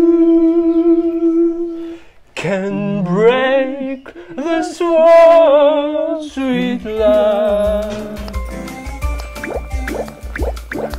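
A man singing long held notes, then notes with a wide vibrato, with a second man's voice joining in. About seven seconds in, a music track with a steady bass beat and ticking percussion takes over.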